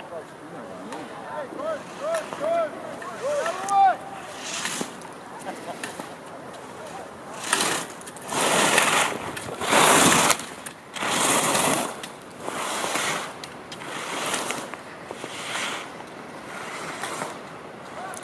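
Ski edges scraping on snow as a slalom racer carves through the gates: a hiss swells with each turn, about one every second and a half, loudest about halfway through and fading toward the end. A few short shouts come in the first few seconds.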